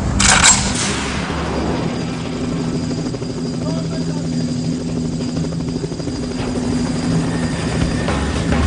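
Steady low drone of a helicopter under a combat scene, with a short loud burst of noise about half a second in.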